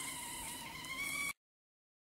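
Night insects chirring steadily, with a thin wavering tone above a high hiss. The sound cuts off abruptly just over a second in.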